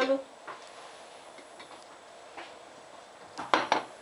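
A ceramic bowl of melted chocolate knocking against a glass-ceramic hob as it is handled and set down: a quick cluster of three or four sharp clacks about three and a half seconds in, after a quiet stretch.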